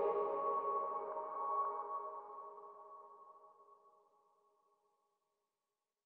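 The last held chord of electronic background music ringing out and fading away over about three seconds.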